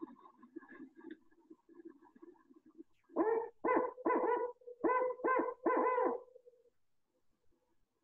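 Recorded barred owl song played back: faint at first, then from about three seconds in a quick run of loud hoots that ends in a drawn-out note, the call often rendered 'who cooks for you'.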